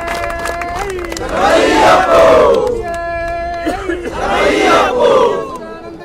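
Ayyappa devotees' namajapam, chanted as call and response. A single voice holds a long steady note, and the seated crowd answers loudly in unison. This happens twice, and the lead voice starts a third call near the end.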